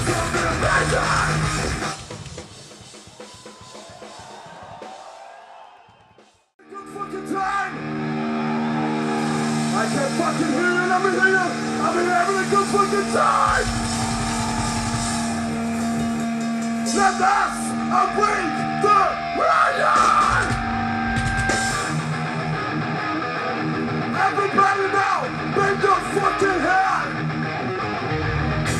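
Live thrash metal band through a PA: the music breaks off about two seconds in and fades to a near-silent gap. About seven seconds in a long held, ringing guitar chord starts, with drums and yelling over it, and the full band comes back near the end.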